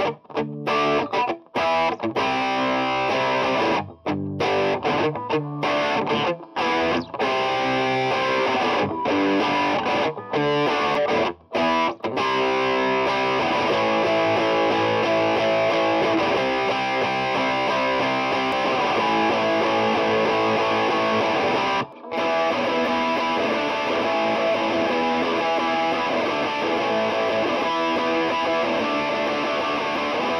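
Distorted electric guitar, a Stratocaster-style guitar played through a Boss DS-2 Turbo Distortion pedal, playing a chord riff. For the first twelve seconds or so the chords are choppy, with many short stops between them. After that the strumming runs on continuously, apart from one brief break about two-thirds of the way through.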